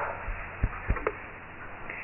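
A short pause in speech: steady low room hum, with three or four soft low thumps clustered between about a quarter second and a second in.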